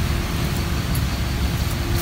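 Steady road traffic noise, a low rumble with a faint steady hum through it.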